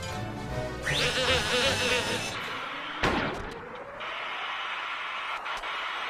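Film score music under action sound effects: a rising sweep about a second in, then a sudden crash about three seconds in that trails off in a falling tone.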